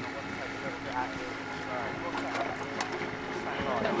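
Mini excavator's engine running steadily in the background, with people talking at a distance.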